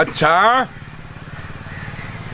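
A small engine, like a motorcycle's, idling steadily with a low, even hum. Near the start a short voice-like call falls in pitch.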